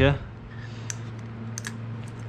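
A few light, spaced clicks and taps of a small motorcycle carburetor and its fittings being handled as it goes back onto the engine. They sit over a steady low hum in the background.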